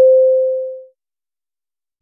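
A single electronic beep at one steady pitch, starting with a click and fading away over about a second, followed by dead digital silence.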